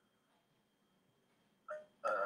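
Near silence: room tone, broken near the end by a brief voiced sound from a person.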